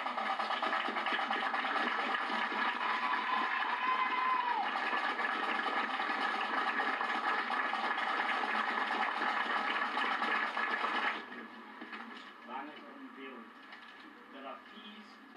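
A large outdoor crowd of children and adults applauding and cheering, a dense steady noise that cuts off abruptly about eleven seconds in, leaving quieter scattered voices.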